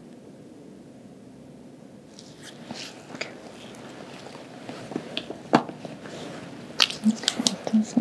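Gloved hands handling a stethoscope and small instruments over a cotton patient gown: soft rustling with several sharp clicks in the second half, after a quiet start. Soft speech begins at the very end.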